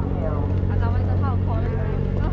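A steady low engine hum, most likely the diesel engine of the moored passenger ferry, with people's voices talking over it.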